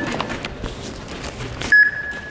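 An electronic beep from an airport gate's boarding-pass scanner sounds near the end: a single steady high tone that starts suddenly and is held. Before it come scattered knocks and handling noise.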